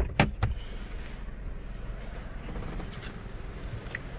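Kia Morning's engine idling as a steady low hum, heard inside the cabin, with a few sharp knocks in the first half second and a faint click near the end.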